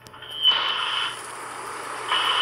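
Old console television switching on with a burst of static hiss and a thin high tone, starting about half a second in. The hiss then settles into a steady noise over a low hum.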